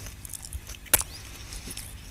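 Chewing a mouthful of toast with chocolate spread and avocado close to a microphone: faint mouth noises, with one sharp click about a second in.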